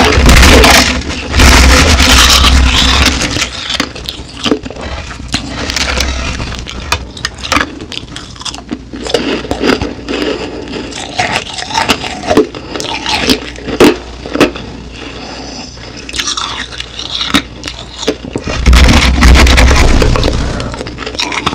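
Crushed ice close to the microphone: hands pressing and scraping into a heap of crushed ice make loud, grainy crunching at the start and again near the end. In between, crushed ice is chewed, with many small sharp crackles.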